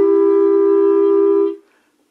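Instrumental music on a woodwind instrument: a steady held note that breaks off about a second and a half in, leaving a brief silence before the next phrase.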